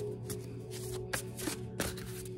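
A deck of oracle cards being shuffled by hand, a run of soft papery flicks and a few sharper snaps about a second and a half in, over soft steady background music.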